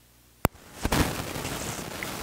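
Near silence broken about half a second in by one sharp click, then room noise with a dull knock or two.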